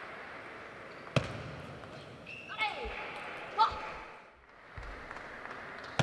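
A single sharp, loud click of a celluloid table tennis ball about a second in, over the steady hiss of a hall. It is followed in the middle by two short high-pitched sliding sounds and a few dull thumps.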